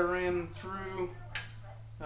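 A man's voice, quiet and indistinct, in the first second or so, over a faint steady low hum.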